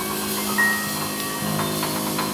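Jazz piano trio playing, with notes struck on a Yamaha grand piano ringing over sustained lower tones.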